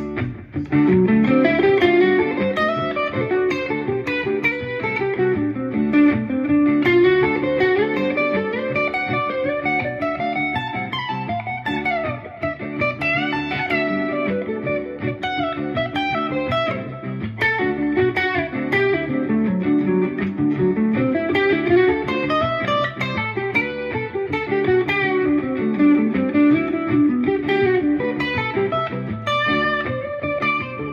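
Stratocaster-style electric guitar playing a continuous run of single notes that climbs and descends the neck in repeated waves. These are Mixolydian arpeggio lines built on a 2-1-4 fingering shape.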